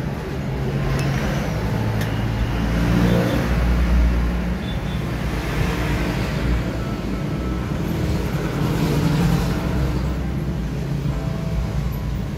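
Steady rumble of a motor vehicle engine running, swelling slightly a few seconds in and again near the end.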